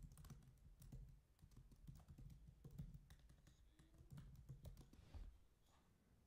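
Faint typing on a computer keyboard: a quick, irregular run of keystrokes that stops about five seconds in.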